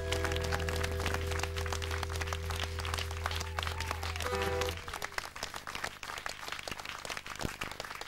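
Live band music ending on a held chord about five seconds in, with audience applause under it that carries on after the music stops.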